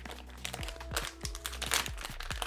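Small plastic accessories bag crinkling as it is picked up and handled.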